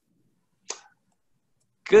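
Near silence broken by one short, sharp click about two-thirds of a second in; a man's voice begins just before the end.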